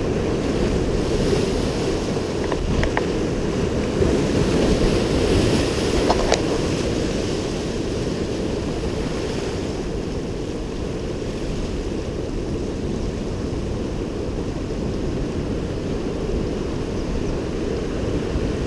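Steady wash of surf breaking over and around rocks, with wind on the microphone; a couple of brief sharp ticks sound about three and six seconds in.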